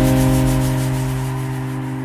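Trance music breakdown: a sustained synth pad chord held while a hissing white-noise sweep fades away, the level slowly falling.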